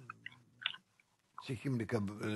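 Faint mouth clicks and lip smacks from a man pausing between phrases. A man's voice starts speaking again about a second and a half in.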